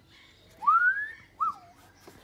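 A person whistling two notes: a long rising note, then a short one that rises and falls.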